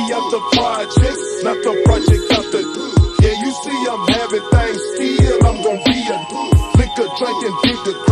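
Hip hop track playing in a DJ mix: rapping over a steady kick-drum beat of about two strokes a second.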